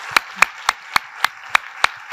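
Audience applauding, with one close pair of hands clapping sharply and evenly, about three to four claps a second, over the softer hiss of the rest of the room's clapping.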